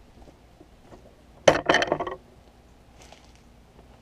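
A short clatter of hard grooming tools knocking together, about a second and a half in, as a brush is swapped for the mane and tail brush.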